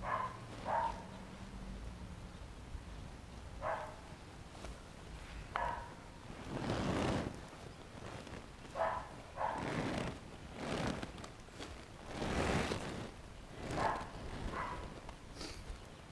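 The heavy vinyl of a deflated bounce house rustling and scraping over a plastic tarp as it is rolled up, in several swells about a second long. A few short, sharp barks from a dog come between them.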